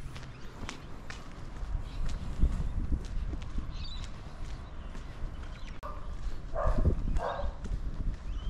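Footsteps at walking pace on a concrete footpath, with a dog barking twice near the end.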